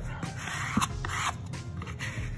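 Yellow plastic squeegee scraping across handmade paper freshly glued onto a wooden panel, a few short strokes in the first second and a half, pressing the paper down and working out an air bubble.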